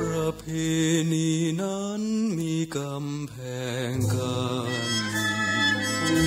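Slow Thai luk krung ballad: a male voice sings a legato melody with marked vibrato over a soft band accompaniment, with brief breaths between phrases.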